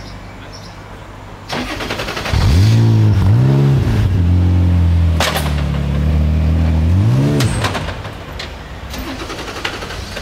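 The Radical RXC Turbo 500's 3.5-litre twin-turbo Ford EcoBoost V6, stationary, goes from idle to two quick revs, then is held at a steady high rev for about three seconds, as launch control holds it. A sharp crack sounds midway through the hold, and a last rev blip comes before it drops back to idle.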